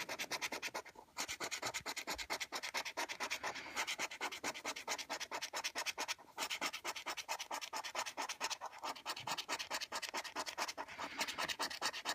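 Scratching off the silver coating of a National Lottery scratchcard: rapid, even back-and-forth scraping strokes, about ten a second, with short pauses about a second in and about six seconds in.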